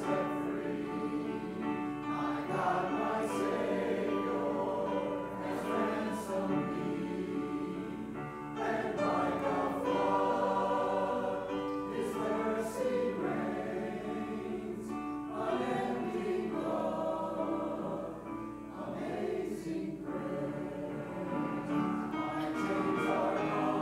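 A mixed church choir of men and women singing an anthem in parts, accompanied by a pre-recorded piano track played back through a speaker.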